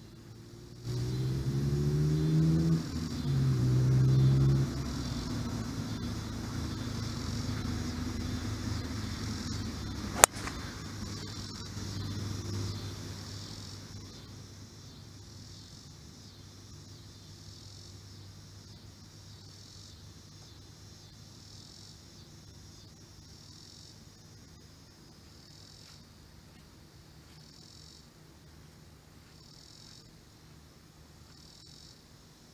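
A motor vehicle's engine rising in pitch twice over the first few seconds, then a low rumble that fades away by about fourteen seconds in, with one sharp crack about ten seconds in. Crickets chirp in the background, pulsing more clearly near the end.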